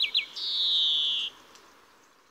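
European greenfinch singing: the tail of a run of quick falling notes, then, about half a second in, one long drawn-out bleating wheeze lasting about a second, the buzzy 'circular saw' part of the male's song. The song stops well before the end.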